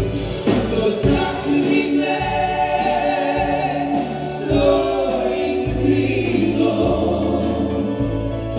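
Live band music with singing: a woman's lead voice and backing vocalists in harmony, with held notes that waver in vibrato, over steady bass notes that change every second or so.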